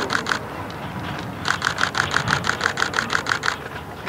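Camera shutter firing in rapid continuous bursts, about seven clicks a second: one burst stops just after the start and another runs for about two seconds from a second and a half in.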